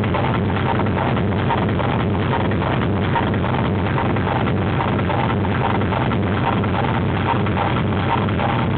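Schranz hard techno played loud from a DJ's vinyl turntables over a club sound system: a fast, steady kick-drum beat under a dense, unbroken wall of sound.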